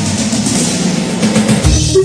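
Instrumental passage of a Romanian pop song with the drums to the fore; the bass drops out for most of it and comes back in near the end.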